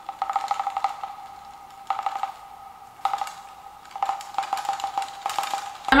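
Small plastic bobblehead's spring-mounted head wobbling, a rapid rattling buzz with a ringing tone that comes in short bursts about once a second and dies away between them.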